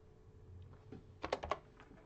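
Typing on a computer keyboard, entering a login password: a quick run of about five faint keystrokes about a second in, with a few scattered clicks around them.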